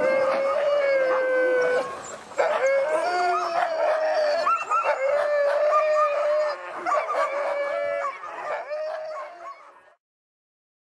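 Several sled dogs (huskies) howling together in long, drawn-out notes, one voice overlapping another at different pitches. The chorus fades away near the end.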